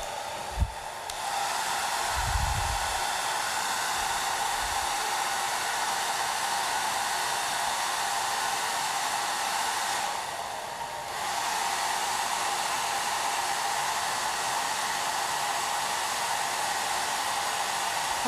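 Hand-held hair dryer running steadily, its airflow rush carrying a constant motor whine, as it dries the glued napkin image of a decoupage piece. It gets louder about a second in, and the hiss thins briefly around ten seconds in as the air is turned away. A few soft low thumps come in the first few seconds.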